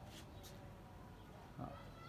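Quiet outdoor background, then near the end a single drawn-out, pitched animal cry begins.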